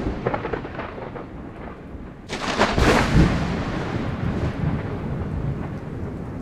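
Thunder: a continuous rolling rumble, with a second loud crack about two and a half seconds in, after which the rumble slowly dies away.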